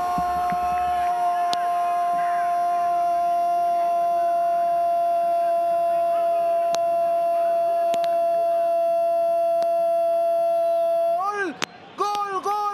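A sports commentator's goal call: one long shouted 'goooool' held on a steady high note for about eleven seconds. Near the end it breaks into shorter rising-and-falling repeats.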